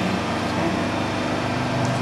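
Hydraulic pump motor of a Boy 22 D injection moulding machine running steadily with a constant hum.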